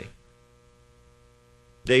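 Faint, steady electrical mains hum in a short gap between a man's spoken words, with the end of one word at the start and the next word beginning near the end.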